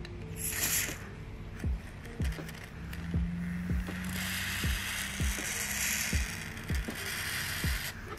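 Aerosol silicone lubricant sprayed through a thin extension straw onto a sealed ball bearing: a short hiss about half a second in, then a longer spray from about three to seven seconds. Background music with a steady beat plays underneath.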